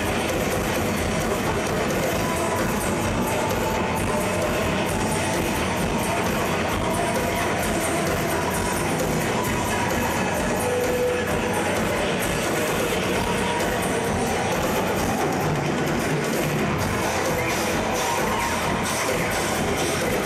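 Live tribal psychedelic rock band playing on stage, with drum kit and percussion under held guitar or keyboard notes, recorded from the audience on a Hi-8 camcorder.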